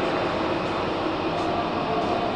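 Steady background noise of a large railway station hall: a constant rumble with a few faint steady tones running through it.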